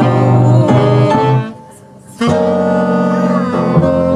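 Small jazz band playing live: two saxophones, piano and double bass. The band cuts out together for a short break in the middle, then comes back in.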